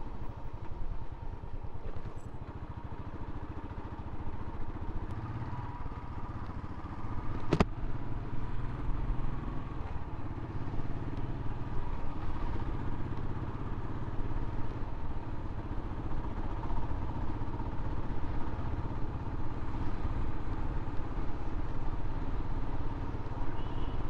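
Motorcycle engine running steadily while the bike is ridden. One sharp click sounds about seven and a half seconds in.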